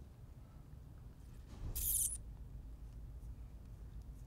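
Quiet room tone with a steady low hum, and one short, high hiss a little under two seconds in.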